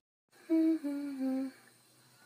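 A person humming three short notes, each a step lower than the one before, with the mouth of a bottle held to her lips.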